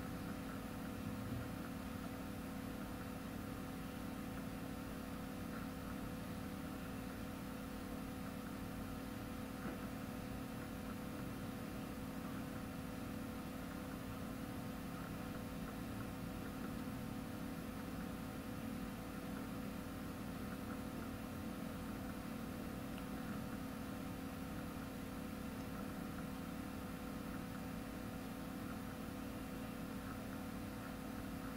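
Steady mechanical hum with an even hiss, unchanging throughout: background machine noise in the room.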